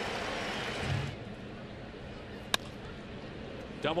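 Ballpark crowd cheering a strikeout, cut off about a second in to a quieter crowd murmur. A single sharp crack of the bat hitting the ball comes about two and a half seconds in.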